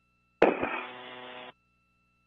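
A brief burst on the spacewalk radio loop: a sharp click as a mic keys, then about a second of muffled, band-limited radio noise that cuts off suddenly as the transmission ends.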